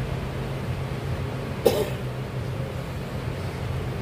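A man coughs once, a little under two seconds in, over a steady low hum.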